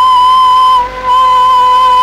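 Bamboo flute holding one long, steady note. It breaks off briefly about a second in, then sounds the same note again.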